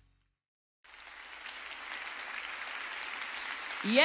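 Audience applauding, starting about a second in after a moment of silence and holding steady; a voice breaks in near the end.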